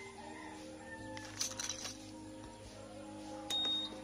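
Honda ADV 150 smart-key ignition buzzer beeping twice near the end, two short high-pitched beeps. This is the answer sound confirming that the ignition has authenticated the smart key, with the buzzer re-enabled. Faint sustained tones run underneath throughout.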